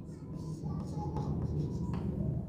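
Chalk writing on a blackboard: faint scratching strokes over a low, steady background hum.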